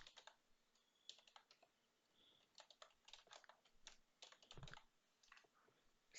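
Faint typing on a computer keyboard, the keystrokes coming in short runs with brief pauses between them.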